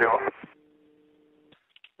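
A man's voice over an air-traffic-control radio channel ends on the word "fuel" right at the start. It is followed by about a second of a faint, steady two-note hum, then a few short clicks just before the next transmission.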